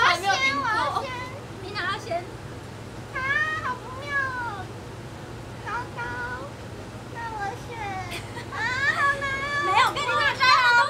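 Young women's voices talking and laughing in high, drawn-out tones, busiest near the start and again near the end, over a steady low hum.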